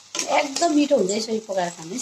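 A metal spatula stirring and scraping soya chunks and spiced potato in an iron wok, with a voice talking over it.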